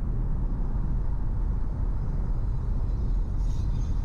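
Steady low rumble of a car driving along a city street: road and engine noise heard from inside the moving car. A brief higher hiss comes about three and a half seconds in.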